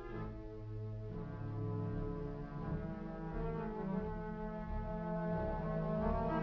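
Orchestral score with sustained low brass chords that grow louder, and a pulsing low beat coming in about two seconds in.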